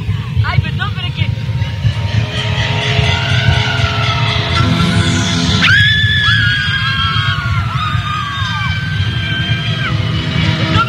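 Live concert sound in a large hall: the band's music builds under a constant crowd rumble, with fans shrieking over it. About six seconds in, loud high sustained cries or held notes set in, several of them falling away in pitch at their ends.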